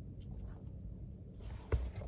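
Steady low rumble inside a car cabin. Near the end comes a soft hiss and one sharp knock.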